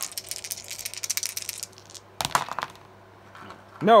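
Three six-sided dice rattling in a cupped hand for about a second and a half. Just after two seconds in they are thrown and clatter briefly across the gaming table.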